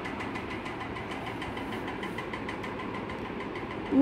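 A steady mechanical hum, like a small motor or engine running, with a fast, even pulse in it.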